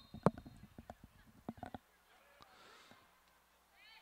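A scatter of faint, sharp hand claps and high-five slaps in the first two seconds, then faint distant voices.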